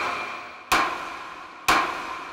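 Wooden judge's gavel striking its sound block, a sharp knock about once a second, each knock ringing out as it fades. The gavel strikes mark a sentence being handed down.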